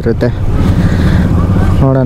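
Motorcycle engine running steadily.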